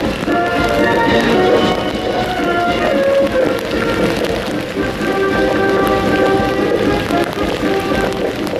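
A military band playing a march, over the steady hiss of heavy rain.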